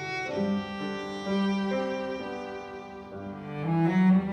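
Violin, cello and piano trio playing live: long bowed string notes over piano, swelling louder near the end.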